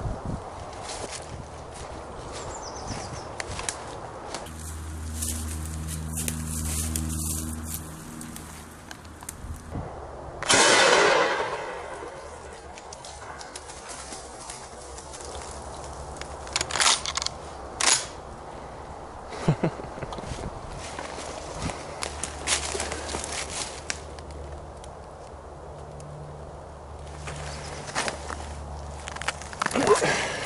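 Footsteps and rustling through woodland undergrowth, with one loud shot from a Winchester SXP pump-action shotgun about ten seconds in, its report dying away over about a second and a half. Two sharp clicks follow some six seconds later.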